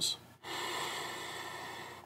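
A person drawing a long, deep breath in through the nose, starting about half a second in and slowly fading over about a second and a half.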